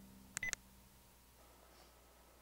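Two quick electronic beeps from a smartphone keypad or touchscreen, close together about half a second in, as a call is being dialled.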